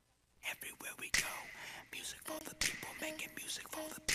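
Opening of a recorded song played over the sound system: whispering voices with scattered clicks and short repeated low blips, starting abruptly out of silence about half a second in, ahead of the beat.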